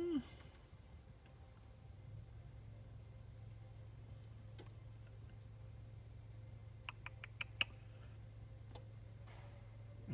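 Quiet car cabin with the ignition off: a low steady hum and a few faint, sharp clicks, including a quick run of about five clicks a little past halfway.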